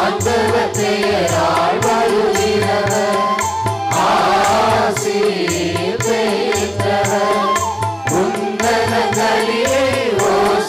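A liturgical hymn sung in a chant-like melody, the voice holding and sliding between long notes over a steady drum beat.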